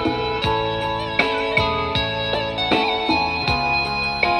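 Instrumental guitar music, plucked melody notes over a steady low beat, played through a bare Pioneer woofer driver with no cabinet, as a test that the driver works. The driver plays it strongly.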